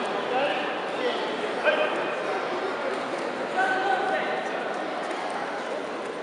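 Many overlapping voices of spectators and coaches in a sports hall, a steady murmur with a few short, loud calls and shouts standing out above it.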